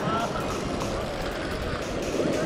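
Steady wash of sea water surging over a rock ledge, an even rushing noise with no rhythm.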